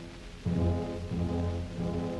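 Opera orchestra playing low held chords, with the brass prominent. They come in after a brief dip about half a second in.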